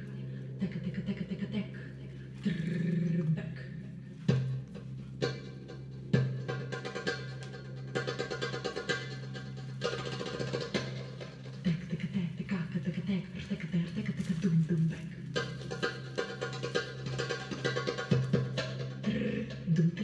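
Belly-dance drum solo music: darbuka (goblet drum) rhythms with quick rolls and accented strokes over a steady low drone.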